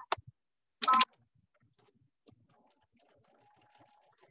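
A Brother sewing machine running for a quarter of a second, a few stitches about a second in, with a faint click just before. Then near silence with faint scattered ticks.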